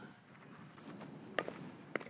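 Faint scuffing and rustling of a fielder shifting his feet on a dirt softball infield, with a sharp knock about a second and a half in and a lighter click just before the end.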